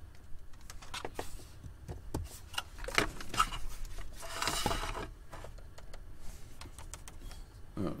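Scattered hard-plastic clicks and knocks from a pickup's dash faceplate and heater-control panel being handled, with a short scraping rustle about four and a half seconds in.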